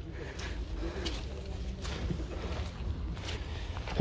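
Footsteps on wet, muddy ground, with faint voices in the background.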